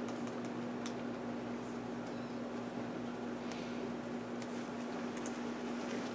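A few faint, sparse clicks from a laptop's keys over a steady hum in the room.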